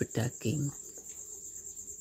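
Crickets trilling steadily at a high pitch, an unbroken pulsing chirr.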